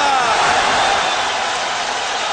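Stadium crowd cheering a goal: a steady wash of many voices that eases slightly towards the end.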